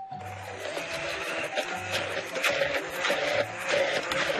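Handheld immersion blender running steadily, puréeing softened boiled-down onion in a plastic beaker, with background music underneath.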